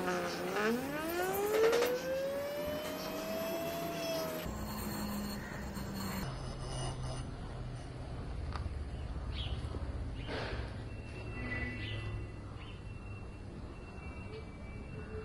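Small 12 V DC motor, salvaged from a car music system, spinning up a flywheel gyroscope: a whine that climbs steadily in pitch for about four seconds. After an abrupt break, a quieter steady low hum follows as the gyroscope keeps spinning.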